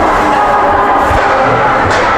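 Ice rink sound during play: faint background music over a crowd murmur, with low thuds and a sharp click near the end.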